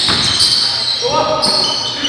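Live basketball play in a gym: the ball bouncing on the hardwood floor and basketball shoes squeaking, echoing in the hall, with players calling out.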